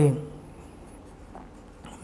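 Pen writing on paper, faint.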